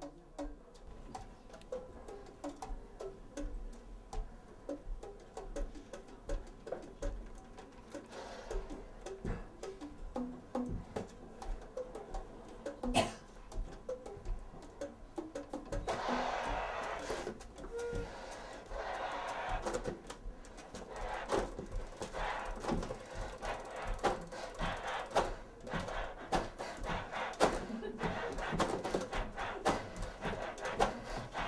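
Experimental sound play on a saxophone: scattered key clicks, taps and short pitched pops rather than played notes. From about 16 s a breathy rushing hiss comes in, with busier clicking and tapping to the end.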